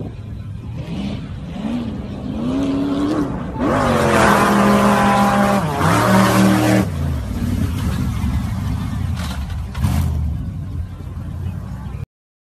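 Sand rail dune buggy's engine revving, its pitch climbing over a few seconds, then much louder for about three seconds as the buggy passes close, the pitch dropping near the end of the pass. After that the engine drops back to a lower, steadier rumble.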